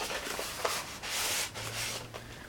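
Rustling and rubbing of sample packaging being handled. The noise is loudest about a second in and dies down shortly after.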